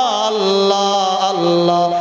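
A man's voice chanting the name "Allah" in long, drawn-out melodic notes, a devotional zikr chant. The held note glides down at the start and steps lower about halfway through.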